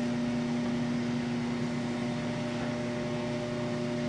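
Steady hum of a web-handling test stand running a nonwoven web through its rollers, a few constant tones over an even machine noise.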